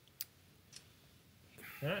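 Two short clicks, a sharp one just after the start and a fainter one about three quarters of a second in, then an intake of breath and a man saying "Alright" at the very end.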